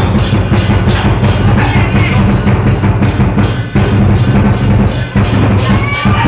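Lion dance percussion: a large drum beaten fast and continuously, with cymbals clashing on a steady beat several times a second.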